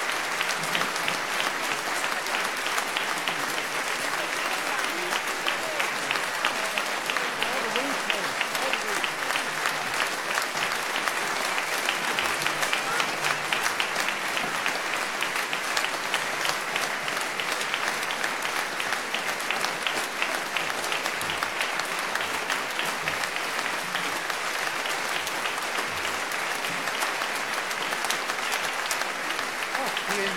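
Large audience applauding: many hands clapping in a dense, steady ovation that holds at one level throughout.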